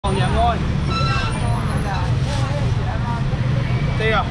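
People talking at a busy fish stall, voices coming and going over a steady low rumble.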